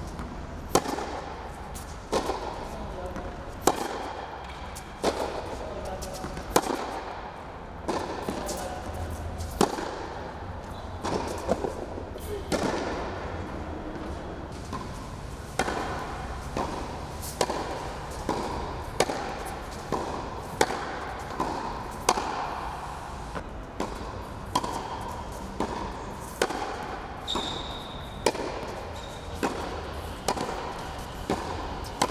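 Tennis rally on an indoor hard court: sharp racket strikes on the ball and ball bounces, one about every second and a half, with voices in the background.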